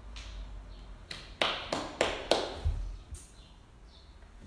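About six sharp knocks or taps in quick succession, starting about a second in and ending a little past halfway, each with a short ring of the room after it.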